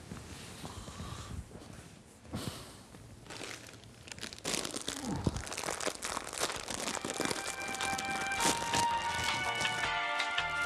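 A foil snack packet crinkling and being torn open, with crackly rustling that gets denser about halfway through. Music comes in under it for the last few seconds.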